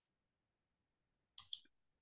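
Two quick clicks of a computer mouse close together, about a second and a half in, bringing up the next slide; near silence otherwise.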